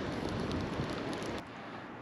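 Steady hiss of wind on the microphone beside wind-rippled water, easing slightly near the end.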